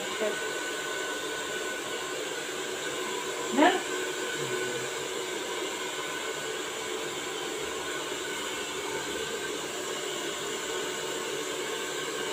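Handheld hair dryer blowing steadily on short hair, a constant rush of air with a steady motor whine.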